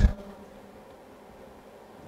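Quiet room tone with a faint steady hum, after the clipped end of a spoken word at the very start.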